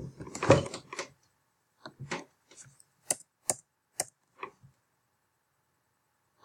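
Computer keyboard being typed on. A louder clattering burst comes in the first second, then about eight separate sharp key clicks spaced roughly half a second apart.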